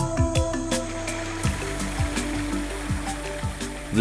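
Background music with sustained notes and a steady low beat, with the sound of rushing water from a small waterfall fading in under it during the second half.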